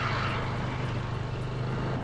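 Scooter engine running steadily while riding, a constant low hum under a rushing haze of wind and road noise.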